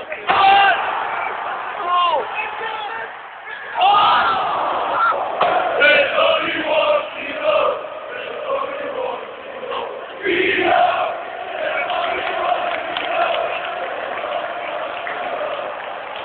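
Football crowd in a stadium stand shouting and chanting, with single voices close by standing out near the start. From about ten seconds in, the mass of fans sings together on one long held note.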